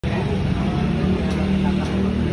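Indistinct talking over a steady low room rumble.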